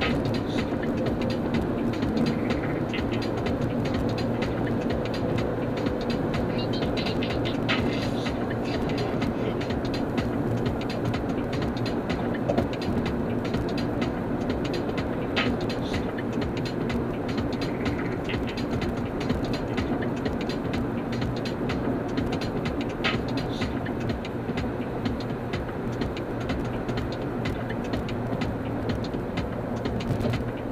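Steady road and engine noise heard inside a Honda's cabin at freeway speed: a continuous tyre rumble and drivetrain hum, with a few faint ticks along the way.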